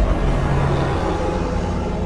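Dramatic intro music with a deep rumbling boom right at the start that slowly dies away.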